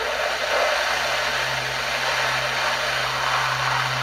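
Tenor saxophone blown with a very loose embouchure and almost no pressure on the reed: mostly a rush of breath through the horn, with a faint low D note growing in under the air about a second in and then held steady. Way more air than note.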